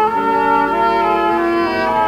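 An opera orchestra holds sustained chords that move in steps, with no voice, on an old live mono-era recording.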